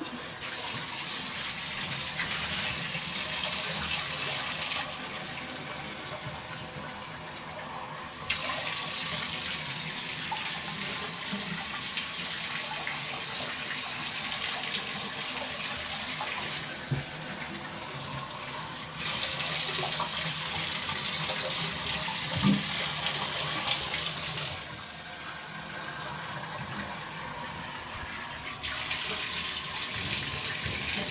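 Water running into a bathtub, a steady hiss that turns brighter and duller by turns every few seconds.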